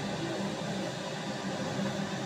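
A steady hiss with a low hum underneath it, with no distinct calls standing out.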